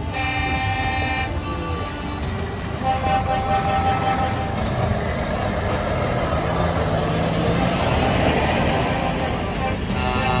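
Trucks sounding their horns as they drive past: one held horn blast in the first second or so, a shorter toot around three seconds in, then a passing truck's diesel engine swells, loudest around eight seconds.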